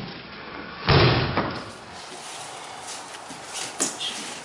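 Aikido students taking falls on the training mat: a loud thud of a body landing about a second in, and a smaller sharp slap near the end.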